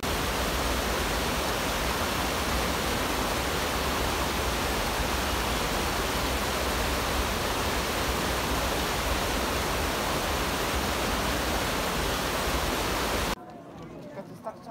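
Small mountain stream rushing and splashing over rocks in a steady, unbroken rush of water that cuts off suddenly near the end.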